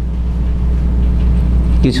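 Steady low electrical hum on the recording during a pause in a man's speech; his voice comes back in near the end.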